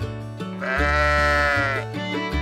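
A sheep bleating once, a single drawn-out call of about a second starting about half a second in, over background music with a repeating bass line.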